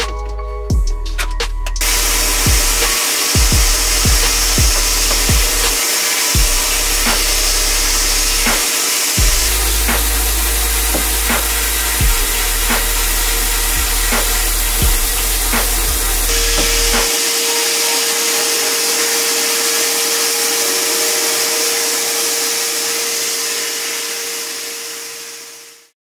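Sandblast cabinet gun hissing steadily as abrasive media blasts the rust off a steel brake booster. The hiss starts about two seconds in and fades out near the end. Background music with a thumping beat plays under it for the first part.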